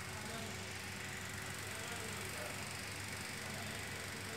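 Bauer film projector running with a steady mechanical hum.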